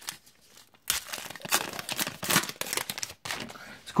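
Baseball card pack wrapper being torn open and crinkled by hand. It makes a dense run of crackly rustles that starts about a second in.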